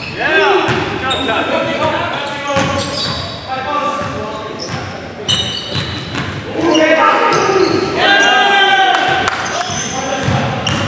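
Basketball dribbled on a gym floor during a game, with players' voices echoing in the large hall.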